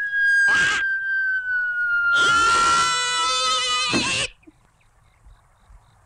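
Cartoon falling whistle, one long slowly descending tone, under a man's short cry and then a long scream. It all cuts off abruptly about four seconds in as he lands, and it is quiet after.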